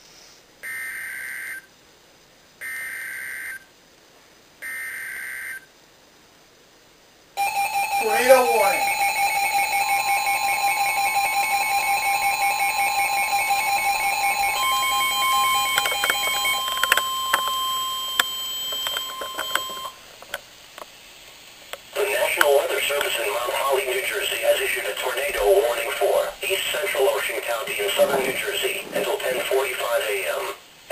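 Emergency Alert System activation on a weather radio: three one-second bursts of data tones (the SAME header) about two seconds apart, then a steady alert tone lasting about twelve seconds. A broadcast voice starts reading the warning about twenty-two seconds in, ahead of a tornado warning for Ocean County.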